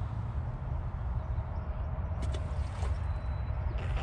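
Steady low outdoor rumble, like wind on the microphone, with a few faint clicks a little over two seconds in.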